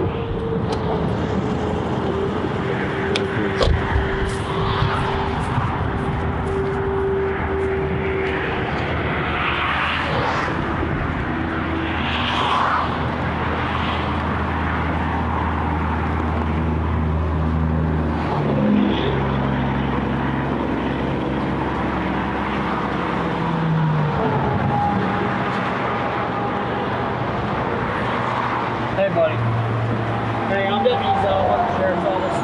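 Highway traffic passing at speed: a steady rush of tyres and engines, with engine notes that rise and fall as vehicles go by.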